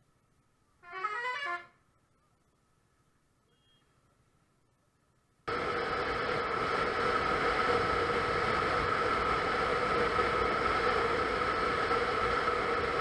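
Mostly silent for the first few seconds apart from a short pitched sound about a second in. About five and a half seconds in, an onboard motorcycle riding sound cuts in abruptly: steady wind rush with an engine drone holding a constant cruising pitch.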